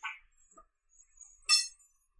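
Two short clicks of carom billiard balls, about a second and a half apart: a softer one at the start, then a sharper, high-ringing click.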